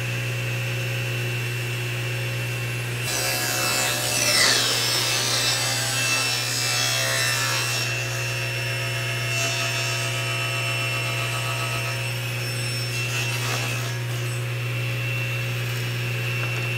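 Table saw running steadily while a crosscut sled carries a plywood test piece through the blade. The cut begins about three seconds in and lasts about five seconds, with a falling whine as the blade takes the load. This is a test cut of the four-cut method for checking the sled fence for square.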